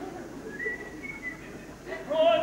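A soft high whistle of two short held notes, the second a little higher, over faint stage noise.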